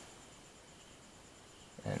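Near silence: faint room tone with a steady, faint high whine, in a pause between spoken phrases. A man's voice starts again just before the end.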